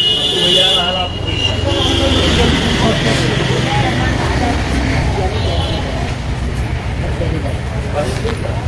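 Busy shop ambience: indistinct voices of customers and staff over a steady low rumble.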